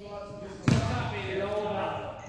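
A basketball bouncing once on a hardwood gym floor, a single sharp thump about two-thirds of a second in, amid voices in the hall.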